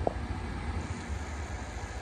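Steady low rumble and faint hiss inside the cabin of a Jaguar I-Pace electric car, with no engine note; a faint thin high tone comes in just under a second in.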